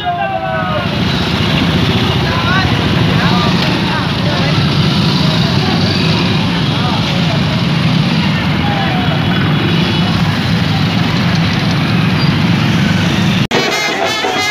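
Many motorcycle engines running at slow procession speed together, a steady rumble with crowd voices and shouts mixed in. Near the end it cuts off abruptly and music with drums begins.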